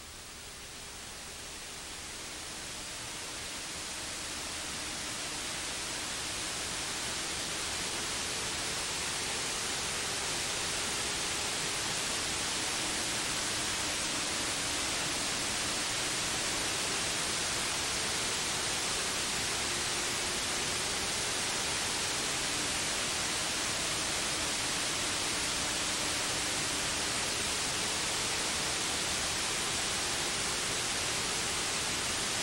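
Steady hiss that swells over the first several seconds and then holds level. Underneath it is the faint drone of late model stock cars racing around the track, wavering slowly in pitch.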